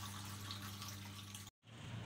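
Faint room tone: a low steady hum under a light hiss, broken about one and a half seconds in by a brief dead-silent gap where the recording is cut, after which a slightly different faint hiss carries on.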